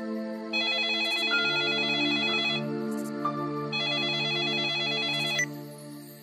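A mobile phone ringing: two warbling ring bursts of about two seconds each, a second apart, over soft background music.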